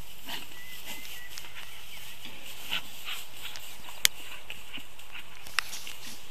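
A puppy tugging and chewing on a plush toy in long grass, with a few faint growls among the rustling. Two sharp clicks come, one past the middle and one near the end.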